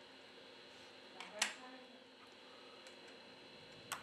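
Nearly quiet room tone with faint hum, broken by a couple of soft clicks about a second and a half in.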